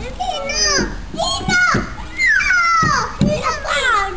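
Toddlers' high-pitched voices calling out and babbling as they play, with a long, falling cry about two and a half seconds in.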